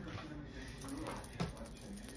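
Faint, distant voice over low household background noise, with one soft knock a little past halfway.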